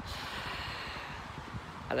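A long, noisy breath from a man close to the microphone, a steady hiss lasting nearly two seconds between spoken sentences.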